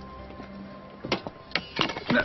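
A metal tray of soft pretzels clattering onto a tile floor, with several sharp knocks from about a second in, over quiet background music.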